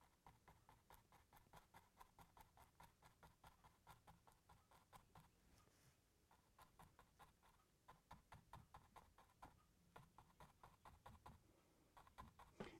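Near silence with faint, quick taps of a paintbrush dabbing paint onto a canvas, about three or four a second, with a short pause about halfway.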